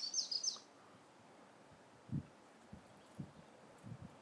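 A small bird's quick run of high chirps that ends under a second in, followed by a few faint, dull low thumps.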